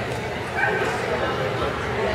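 A dog gives one short, high bark about half a second in, over a background of people talking.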